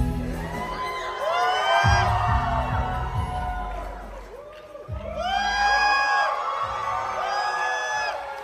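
A K-pop dance track playing through a concert PA, with deep bass hits about two, five and six and a half seconds in, while the audience screams and whoops over it.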